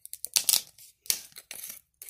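Screw cap being twisted open on a miniature glass liquor bottle: sharp crackling clicks as the seal breaks, in three short runs.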